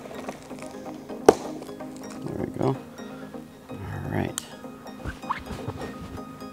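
Background music under the handling of a long cardboard shipping box as its packing tape is cut with a box cutter: a single sharp click about a second in, then short rustling scrapes of cardboard and tape.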